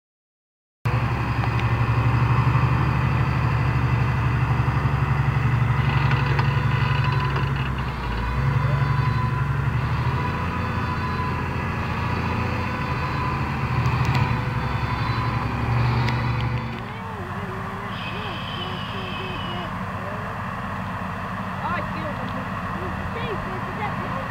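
Large farm tractors' diesel engines working under load while ploughing: a loud, steady low drone. About 17 seconds in it drops suddenly to a quieter, more distant engine drone.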